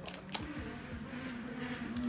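A steady low hum with a hiss that swells and fades, an outside background noise that the speaker excuses herself for. Two light clicks from plastic cosmetics being handled come near the start and near the end.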